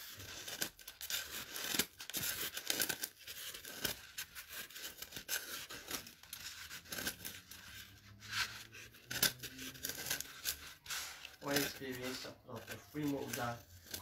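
Scissors cutting through a sheet of EVA foam, trimming the excess flush with the edge of a round foam cake base: a run of short, sharp snips one after another.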